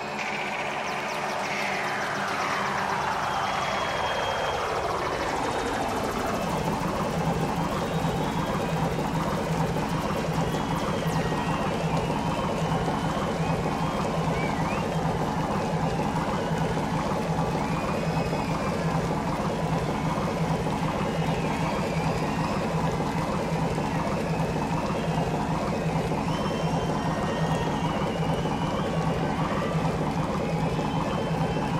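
Ambient electronic outro music: a synth sweep falls steadily in pitch over the first six seconds, then settles into a sustained low drone with held higher tones over a dense hissing wash.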